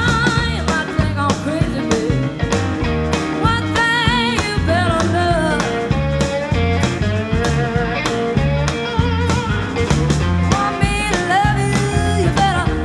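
Live blues band playing: an electric guitar lead of gliding, wavering notes over bass guitar and drums.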